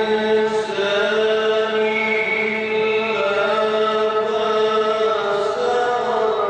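A male Quran reciter chanting in the melodic recitation style, holding long, drawn-out notes that turn slowly in pitch.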